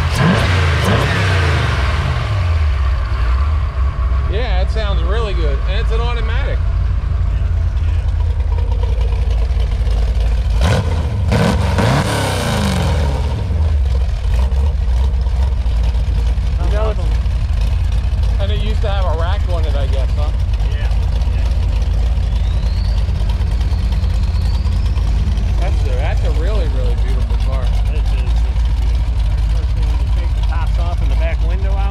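Small-block Chevy V8 with wrapped headers in a C3 Corvette, idling with a steady rumble and revved twice: it is settling back from a rev right at the start, and is blipped up and let fall again about halfway through.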